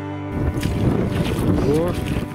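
Background music cuts off just after the start. Wind then buffets the microphone, loud and uneven, with a brief rising vocal sound near the end.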